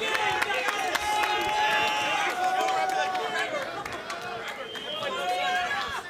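Live wrestling crowd shouting and cheering, with several voices holding long yells over the noise of the arena.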